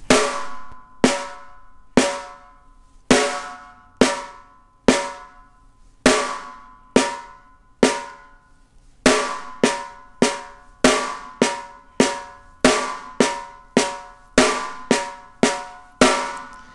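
Snare drum struck with a single drumstick in one hand, demonstrating Moeller-technique strokes (whipping downstroke, tap, upstroke). The strikes come about one a second at first, then speed up to two or three a second from about nine seconds in, each ringing briefly.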